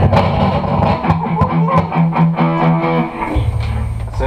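Electric guitar and bass guitar playing loosely, with a low note picked about four times a second through the middle, then a lower note held near the end, and short taps scattered throughout.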